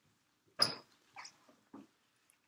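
A short, sharp burst of a person's voice about half a second in, followed by two shorter, fainter ones.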